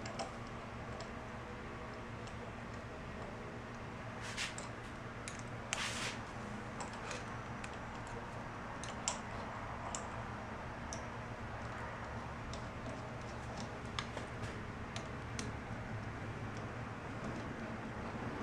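Light, scattered metal clicks and ticks of a hand driver turning and seating a small bolt in a motorcycle steering damper's clamp mount, over a steady low hum.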